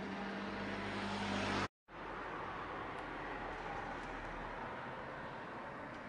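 Street traffic noise with a motor vehicle's engine hum growing a little louder. It cuts out abruptly for a moment just under two seconds in, then gives way to a steadier, quieter hiss of street ambience.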